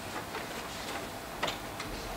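Quiet meeting-room tone with a few light clicks and taps, one more distinct about one and a half seconds in.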